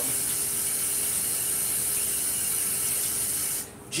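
A steady hiss that dips out briefly just before the end.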